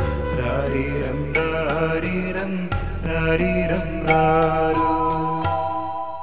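Closing bars of a Malayalam drama song's backing music: percussion strikes over a bass line and a melody, settling on a held chord that fades near the end.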